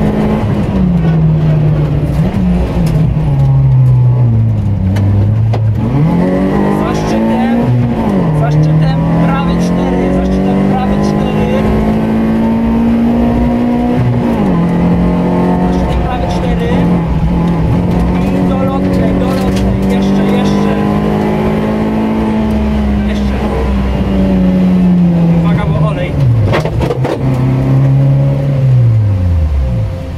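Rally car engine heard from inside the cabin, pulling hard along a stage: the engine note climbs, steps down suddenly at each upshift and holds high for long stretches. Near the end the revs fall steeply as the car brakes and changes down.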